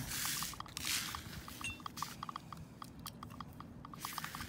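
Heavy glass ashtrays being handled and swapped on a leather surface. Two short brushing rustles come in the first second, then faint, irregular light ticks.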